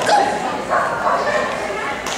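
A dog barking repeatedly while running an agility course, several short barks in a row.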